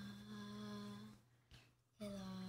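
A faint voice holding one long, steady sung note that ends a little over a second in.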